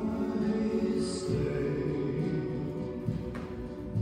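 Music of choral voices singing sustained, held chords.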